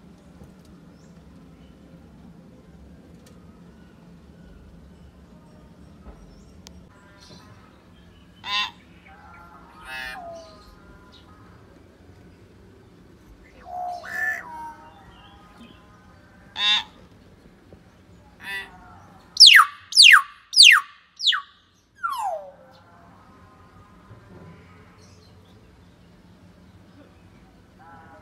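Hill myna calling: a few scattered short calls, then a quick run of five loud, steeply falling whistles and one longer falling whistle just after.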